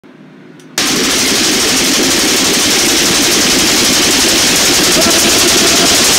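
Loud, dense rapid crackling and popping that starts abruptly about a second in and runs on steadily.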